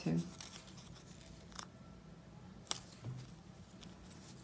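Faint handling sounds of copper tape being wound around a small block of card, with two light, sharp clicks, one after about a second and a half and another near three seconds.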